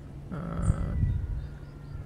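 A woman's short, hesitant "euh" about a third of a second in, over a low steady background rumble.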